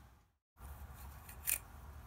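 One short sharp click about one and a half seconds in, from the small parts of a motorcycle indicator being handled and pulled apart by hand, over a low steady hum. The sound cuts out completely for a moment shortly after the start.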